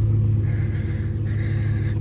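An engine idling steadily in the background, a low even hum.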